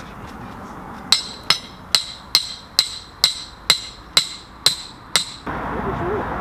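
A hammer striking a steel mooring pin to drive it into the bank: ten sharp, ringing metallic blows, about two a second, that stop abruptly.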